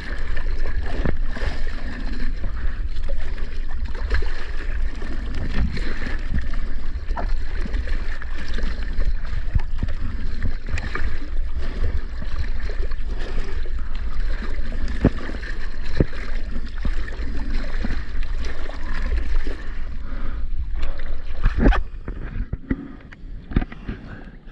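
Seawater splashing and rushing around a waterproof camera held at the surface while surfing, with a heavy rumble of water and wind on the microphone and many small splashes. It turns quieter about two seconds before the end.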